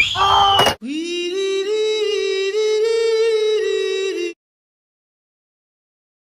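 A short loud burst with a falling squeal and a sharp knock, then a single long note held by a voice for about three and a half seconds, its pitch stepping slightly, cut off abruptly into silence.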